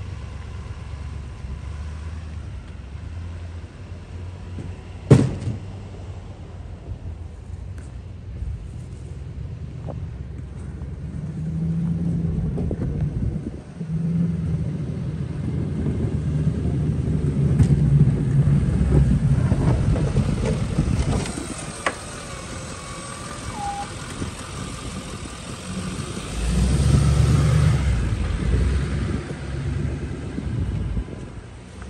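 Snowplow pickup trucks' engines running and driving over snow: a low rumble that swells twice, with a single sharp knock about five seconds in.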